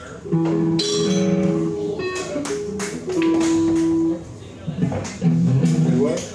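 Guitar playing a few ringing chords and single notes in three short phrases with brief breaks between them, over the chatter of a crowd.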